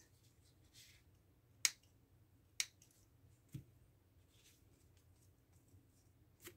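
Small thread snips cutting off excess tied thread: two sharp snips about a second apart, then a softer knock about a second later.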